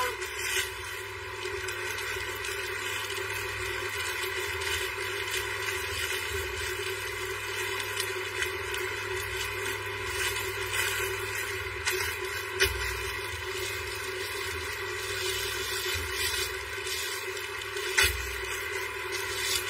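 Plastic packaging on folded clothes rustling and crinkling now and then as the packs are handled, over a steady droning background hum.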